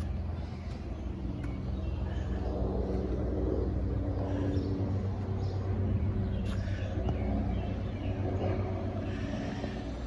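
A steady, low motor hum, like an engine running at idle, holding one pitch throughout.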